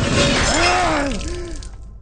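A man crying out in long, wavering wails of pain over a loud crashing, shattering noise. Both fade away in the second half.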